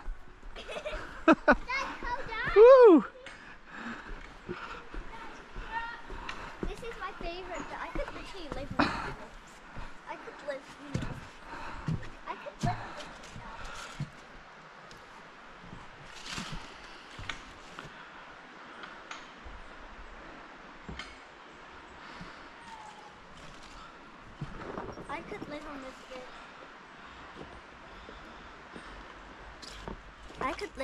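A child's high voice calling out loudly twice in the first three seconds. Then fainter voices and scattered knocks follow.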